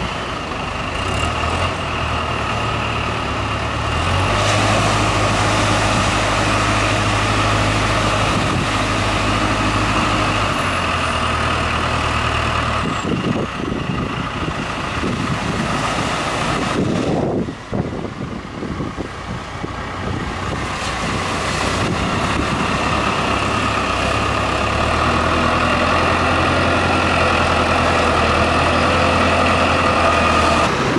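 A farm tractor's diesel engine working as it hauls a fishing boat up the beach, its low hum stepping up and down, over the wash of breaking surf. About halfway through the engine drops away for several seconds, leaving gusty wind and surf, then comes back near the end.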